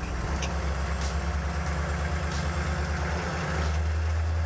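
AM General M1097A2 Humvee's 6.5-litre V8 diesel running steadily as the truck rolls through soft sand, heard from inside the cab. A few light metal-on-metal knocks come from the seat backs touching the body.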